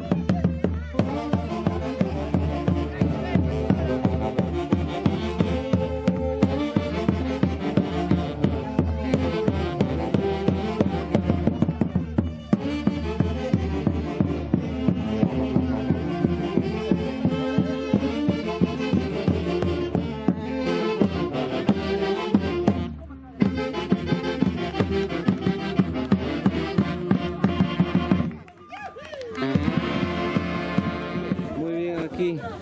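Traditional Andean festival music from a live band with saxophone, a steady drum beat under the melody. The music drops out briefly twice in the last seven seconds.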